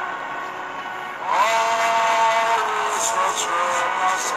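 Gospel worship music with long held notes; a new set of notes slides up into pitch a little over a second in and holds.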